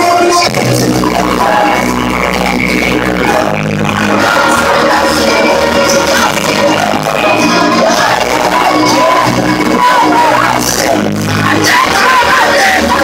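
Rock band playing loudly live, heard from within the audience on a phone recording with poor, distorted sound.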